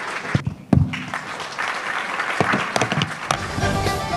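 Audience applauding, with a low thump just under a second in; a little past three seconds, music starts.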